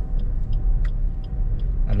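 Suzuki S-Presso driving at low speed, heard from inside the cabin: a steady low rumble of engine and road noise with a faint hum.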